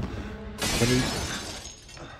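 Film soundtrack: a man grunting, and glass shattering about half a second in, the crash fading over about a second.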